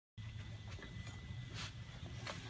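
Low steady background hum with a thin, faint high whine, a few soft clicks, and a short hiss about one and a half seconds in.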